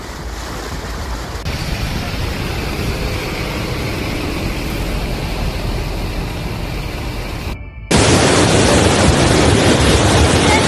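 Floodwater rushing, with wind noise on the microphone: a steady, even rush. After a brief dip near the end it comes back louder and fuller as a fast torrent of floodwater pours down a street.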